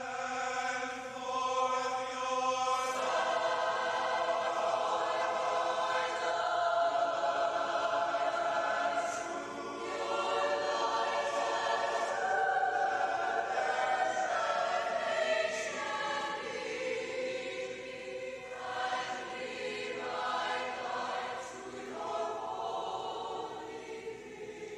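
Mixed choir of men's and women's voices singing sustained chords. It comes in just before this point and grows fuller about three seconds in.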